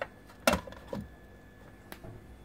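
A sharp click about half a second in, a softer one about a second in and a faint tick near the end, over a faint steady background hum.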